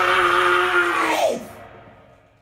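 A man's drawn-out shout held on one steady pitch, dropping in pitch about a second and a half in and then fading away.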